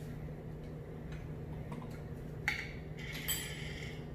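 Light clinks of metal and glass as a glass jar of cocktail cherries and a metal cocktail pick are handled: faint ticks, then two sharper clinks about two and a half and three and a quarter seconds in, the second ringing briefly, over a low steady hum.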